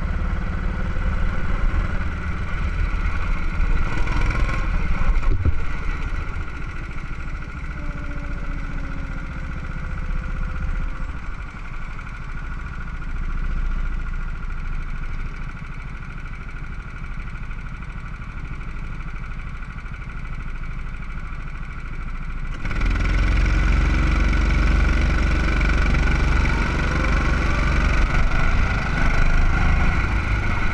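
Go-kart engines running, heard from on board a kart, a continuous drone with a strong low rumble. About three-quarters of the way through, the sound jumps suddenly louder and deeper, and near the end engine pitches rise as the karts accelerate.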